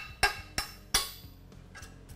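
A hammer tapping on the end of a steel expanding-collet bolt, four quick taps in the first second, each ringing briefly, knocking the collet loose from the flange.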